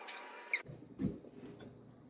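Small handling noises: a sharp click about half a second in, then a soft low thump a moment later, with faint rustling.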